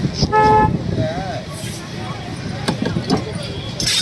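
A green plastic scaler rasping scales off a rainbow runner on a wooden block. A short horn toot sounds about a third of a second in, the loudest sound here, with voices in the background.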